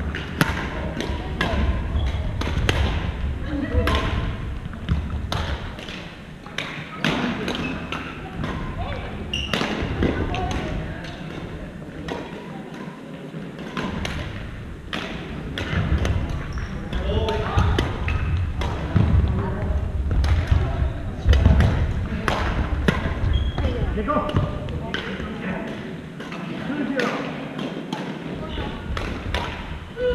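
Badminton play in a large gymnasium: sharp, irregular racket strikes on shuttlecocks from this and neighbouring courts, with footfalls thudding on the wooden floor and indistinct players' voices in the hall.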